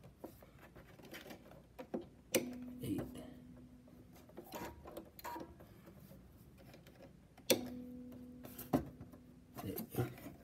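Bernina computerized sewing machine: a few clicks of handling, and two short spells of a steady low motor hum, each starting with a click, about two and a half seconds in and again about seven and a half seconds in.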